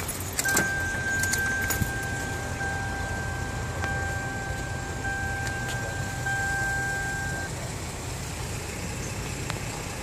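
A steady, high-pitched electronic warning tone, held for about seven seconds and then cutting off, over a constant low rumble. A few sharp clicks come near the start.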